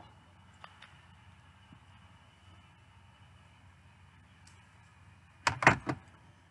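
Quiet room tone with a few faint clicks about a second in. Near the end comes a quick cluster of loud knocks and clatter as makeup items are set down and picked up close to the microphone.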